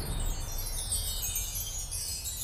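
Shimmering chime sound effect for an animated title sting: a cascade of high tinkling tones sliding downward.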